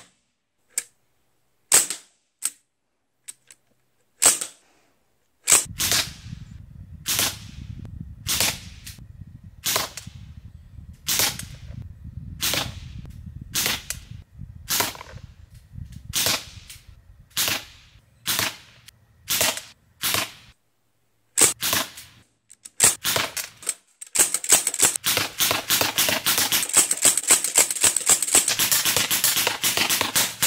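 Sig Sauer MPX .177 semi-automatic pellet rifle, running on high-pressure air, firing a long string of shots: evenly spaced about one every three-quarters of a second, then rapid fire at several shots a second over the last six seconds or so. A low rumble sits behind the shots after the first few seconds.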